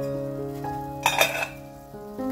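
Stainless steel pot lid lifted off a pot of boiling water: a brief metal clatter about a second in, over background piano music.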